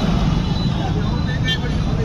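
Street traffic of motorcycles running along the road, a steady low rumble, with a brief high-pitched sound about one and a half seconds in.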